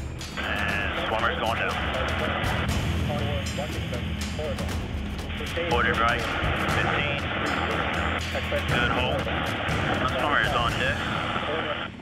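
Crew voices over a helicopter intercom, thin and narrow as if through a radio, talking on and off over a steady low drone, with background music.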